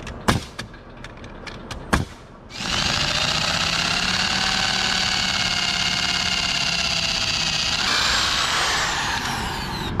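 A few sharp knocks, then an electric drill running steadily with a long bit, boring a hole through a 2x4 block into a rafter for a lag bolt. The sound roughens near the end and its whine drops in pitch as the drill winds down.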